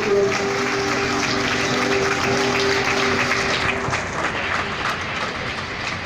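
Crowd applauding, a dense patter of clapping, with a steady held musical note over it that ends a little before four seconds in.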